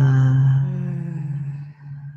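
A woman's voice letting out a long, steady sounded exhale: one low held vocal tone that fades away near the end, a breathwork exhale made with sound.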